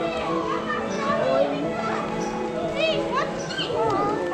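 Children chattering and squealing, with one high squeal near the end, over steady background music.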